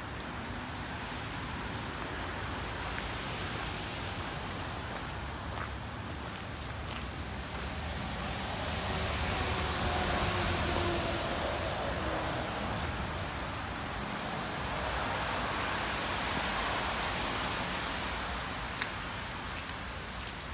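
Heavy rain pouring down: a steady hiss of falling drops that grows louder about halfway through.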